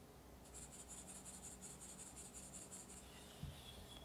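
Cake flour being sifted through a fine wire-mesh sieve, shaken in quick even strokes, about six a second, with a faint, high, scratchy hiss. The sifting stops about three seconds in, and a soft knock follows.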